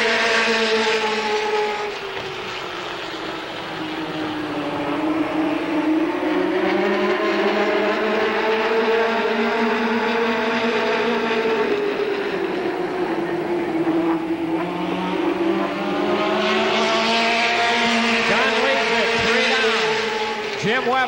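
A pack of late model stock cars racing on an oval, their V8 engines running hard. The pitch sinks twice as the cars go into the corners and climbs again down the straights. Near the end, cars sweep past close by with a quick drop in pitch.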